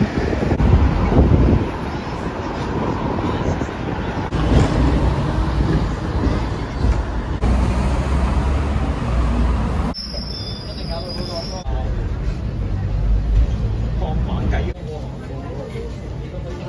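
Rumble and rattle of a Hong Kong double-decker tram running through street traffic, heard from on board by an open window. A short, steady high whine sounds about ten seconds in, and the noise drops to a quieter background near the end.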